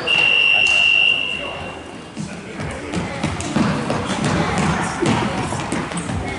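Gym scoreboard buzzer sounding once, a steady high tone lasting just under two seconds, marking the end of a timeout. After it come voices around the gym and a few thuds.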